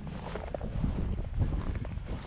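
Wind buffeting the microphone of a handheld action camera, an uneven low rumble.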